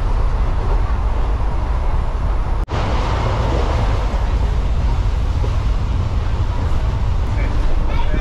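Passenger train running, heard from inside a second-class carriage with open windows: a loud, steady low rumble and rattle of the moving coach, which cuts out for an instant about a third of the way in.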